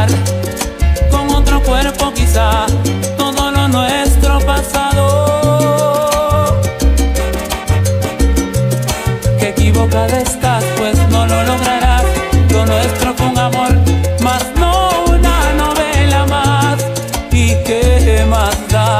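Salsa music in an instrumental passage with no sung lyrics: a pulsing bass line under the band's melody lines, loud and steady throughout.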